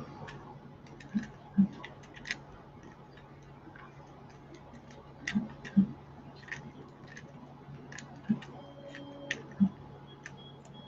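Light, irregular metal clicks and taps as a threaded lens retaining ring is screwed down by hand into a laser lens tube with a mounting tool, over a steady low hum.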